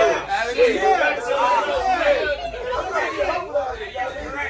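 Several men talking over each other in lively, overlapping chatter, with no single clear speaker.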